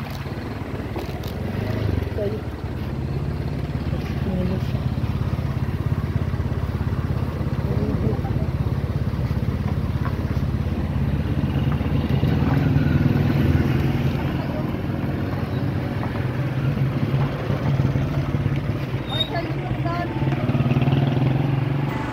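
A motorcycle engine idling steadily close by, with faint voices in the background.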